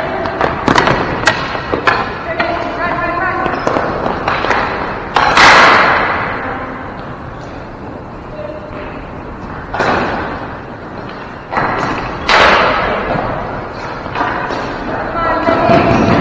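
Indoor ball hockey play in a gymnasium: loud thuds of the ball and sticks striking, three big ones about five, ten and twelve seconds in, each echoing through the large hall, with players calling out.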